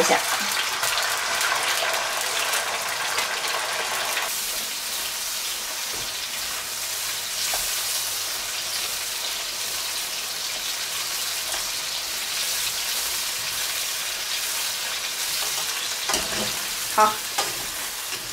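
Whole shell-on shrimp deep-frying in a wok of hot oil: a steady sizzle, strongest for the first four seconds after they go in, then settling to an even, slightly quieter fry as they are turned with chopsticks.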